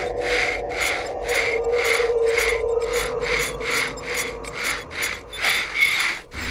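Slate pencil scratching across a child's slate in quick, even strokes, about two to three a second, over a low sustained musical drone.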